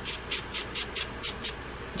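Pink nail buffing block rubbed quickly back and forth over a fingernail, a short scratchy stroke about five times a second, stopping about a second and a half in. The block is lightly buffing the shine off the natural nail's surface as prep.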